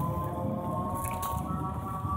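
Eerie Halloween sound effect playing over speakers: long, held tones that glide slowly in pitch, over a steady low rumble.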